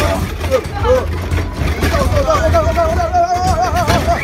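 Steady low rumble of an earthquake simulator ride shaking. About halfway through, a voice cries out in one long note that wobbles in pitch.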